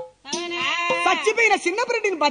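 A burrakatha performer's voice: after a brief break, a long, loud vocal phrase whose pitch wavers up and down.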